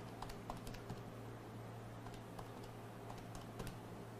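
Faint, irregular clicking of typing on a computer keyboard, over a steady low electrical hum.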